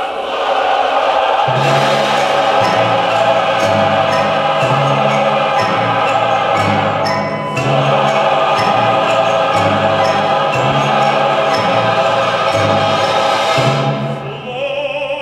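Large mixed choir singing sustained, stately chords with orchestra. A low bass line stepping from note to note and light regular strokes come in about a second and a half in, and the sound dips briefly about halfway through.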